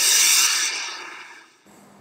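A person's long, breathy exhale close to the microphone, a loud hiss that fades out about a second and a half in.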